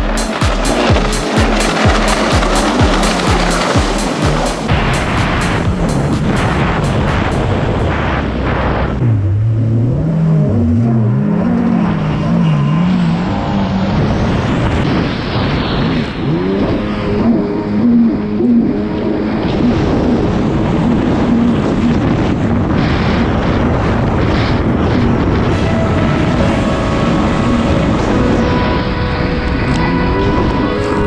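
Jet ski engine revving up and down with the throttle as the craft races, under a music track with a steady beat.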